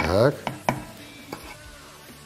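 A wooden cutting board tapping sharply against the rim of a stainless steel pot three times as chopped spring onion is knocked off it into the pot.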